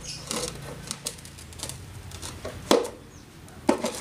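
Plastic chicken-feeder parts clicking and knocking as orange plastic pieces are pressed onto a red plastic feeder tray by hand: a handful of sharp clicks, the loudest about two-thirds of the way through.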